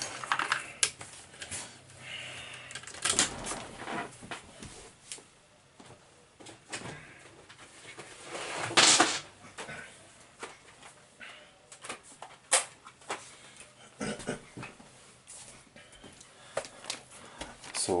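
Scattered knocks, clicks and rustles of objects being moved and handled, with one louder rustle or scrape about nine seconds in.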